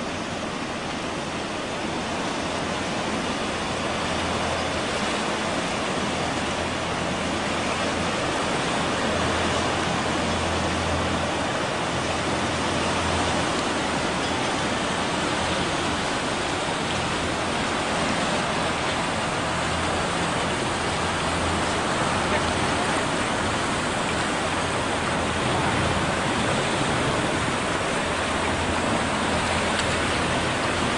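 A steady, even rushing noise, like open-air wind and sea ambience on a camcorder microphone, growing slightly louder over the first several seconds.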